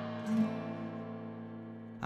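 Instrumental gap in a song: a strummed guitar chord rings out and slowly fades.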